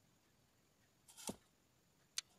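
Near silence: room tone, with one brief soft swish a little over a second in.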